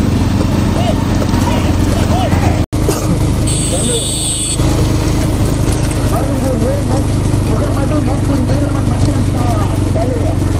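Men's voices shouting over the steady running of motorcycle engines alongside a bullock cart race. The sound cuts out for an instant near three seconds in, then a brief high tone lasts about a second.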